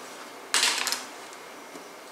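Kitchen knife cutting through a piece of eggplant onto a plastic cutting board: one short, sharp scraping cut about half a second in.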